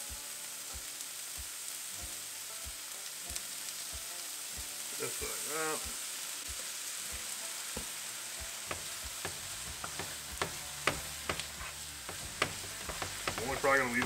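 Diced onion and green pepper frying in a hot nonstick skillet, with a steady sizzle. From about nine seconds in, a wooden spatula stirs the vegetables with a run of sharp clicks against the pan.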